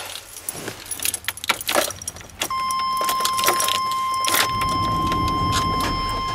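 Keys jangling in a van's ignition; about two and a half seconds in a steady warning tone comes on, and about two seconds later the engine turns over and starts running, on a van that has been having trouble starting.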